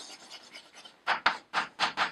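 Chalk scratching on a blackboard as letters are written. It is faint for the first second, then comes as a quick run of short scratchy strokes in the second half.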